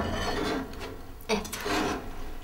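Enamel pot scraping as it is slid across the iron top of a kitchen stove: a longer scrape at the start, then another about a second and a half in.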